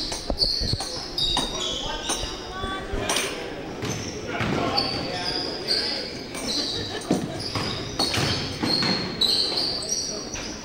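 Basketball dribbling and bouncing on a hardwood gym floor, mixed with repeated brief high-pitched sneaker squeaks as players cut and stop, all echoing in the gym.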